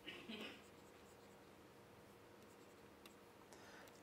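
Near silence with faint room tone: a brief soft scratch near the start and a few faint ticks near the end, from a stylus writing on a pen tablet.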